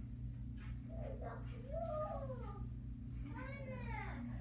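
Two drawn-out meows, one starting about a second in and a second near the end, each bending up and then down in pitch, over a steady low hum.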